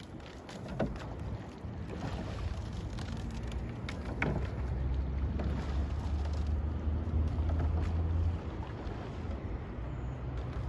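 Wind buffeting the microphone, heaviest from about five to eight seconds in, over a faint wash of water with a few short knocks and splashes from a double scull's oars as it is rowed past.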